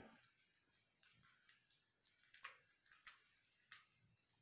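Faint, scattered small clicks and crinkles of a small cardboard box of trivia cards and its wrapping being handled and opened, starting about a second in.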